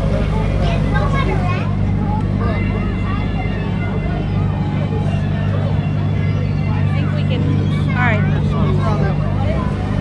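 Engine of a motorized river raft running with a steady low hum, under passengers' chatter and children's voices.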